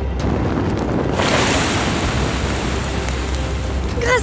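Fire-scene sound effect: a steady deep rumble under a rushing noise that turns into a bright, loud hiss about a second in.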